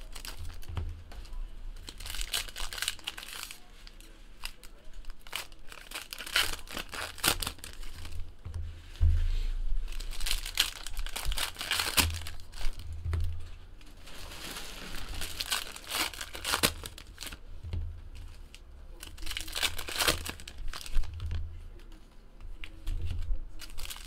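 Foil trading-card pack wrappers crinkling and tearing as packs of Panini Prizm basketball cards are ripped open and handled, in irregular crackles with occasional dull knocks of handling.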